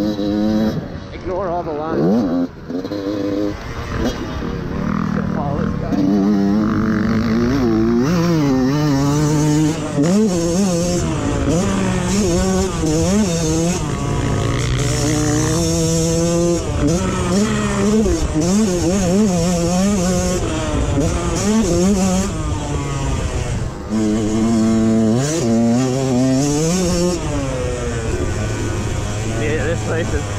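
Yamaha YZ125 two-stroke dirt bike engine revving hard on the track, its pitch climbing and dropping again and again as it is shifted and throttled on and off.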